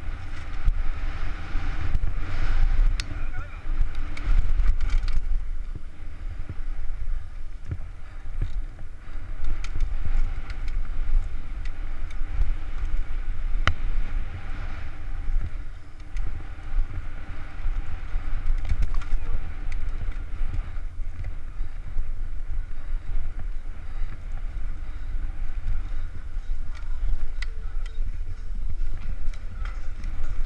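Mountain bike descending a dirt trail, heard from a helmet-mounted camera: a steady low rumble of wind buffeting the microphone over tyre noise on dirt and loose stones, with scattered sharp clicks and knocks from the bike as it runs over bumps.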